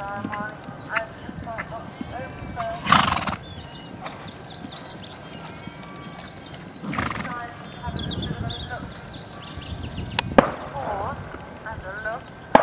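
A horse working under saddle on grass, with two loud breathy rushes of noise about three and seven seconds in and a sharp click near the end, and birds chirping throughout.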